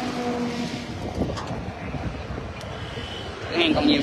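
A motor vehicle's engine running steadily under outdoor background noise.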